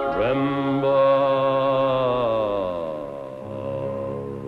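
A man and a group of women singing a slow gospel hymn in harmony, holding long drawn-out notes. A voice slides up into the note just after the start, and the held notes sink slowly in pitch in the middle.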